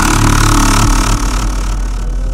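Heavy dubstep track: a dense, sustained wash of distorted noise over a steady deep bass, easing slightly near the end.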